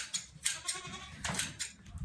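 Goats and sheep bleating in a pen, with a few sharp snips as a sheep's fleece is clipped by hand.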